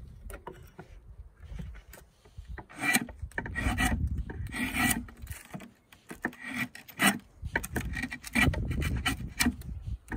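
Draw knife shaving black locust peg stock clamped in a shave horse: a series of rasping pull strokes of the blade along the wood. The strokes start about three seconds in, after some light handling clicks, with a short pause near the middle.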